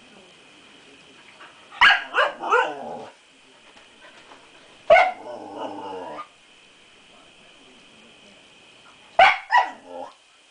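A six-month-old Siberian Husky puppy barking at her own reflection, which she takes for another dog. There are three quick barks about two seconds in, a single bark drawn out for about a second around five seconds, and two more sharp barks near the end.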